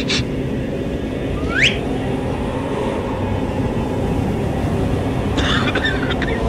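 A steady low rumbling drone, with a short rising whistle about a second and a half in and brief hissing bursts at the start and near the end.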